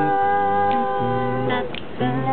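An a cappella vocal group humming sustained chords without lyrics over a sung bass line, the bass changing note about a second in.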